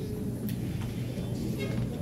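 Chalk on a blackboard as a word is written: a sharp tap about half a second in and short faint scratches later, over a steady low hum.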